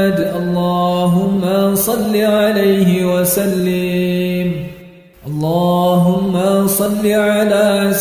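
Vocals-only chanting of the salawat on the Prophet Muhammad, sung in long held, slowly bending notes. There is a brief break for breath about five seconds in.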